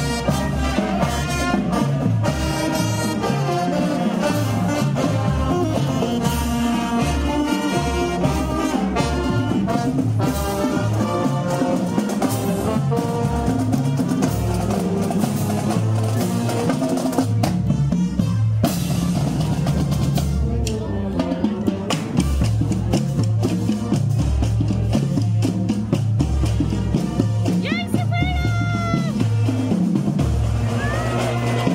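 High school marching band playing on the march: saxophones and brass over a drumline with bass drums and cymbals. About two-thirds through, the horns thin out and the drums carry on.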